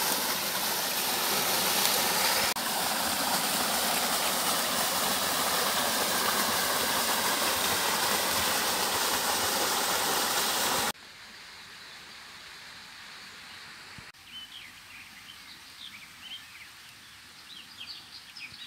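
Small woodland waterfall splashing into a shallow stream, a steady rush of water. About eleven seconds in it cuts off suddenly to a much quieter background with scattered high bird chirps.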